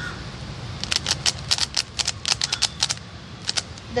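A 3x3 Rubik's cube's plastic layers being turned quickly by hand: a rapid run of sharp clicks for about two seconds, then two more clicks. This is the Z-permutation algorithm being executed as the last step of the solve.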